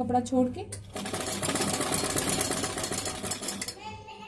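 Sewing machine stitching through fabric, a fast even run of ticks that starts about a second in and stops just before the end.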